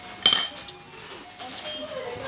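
Metal cutlery striking a ceramic plate: one short, bright clink with a brief ring, about a quarter of a second in.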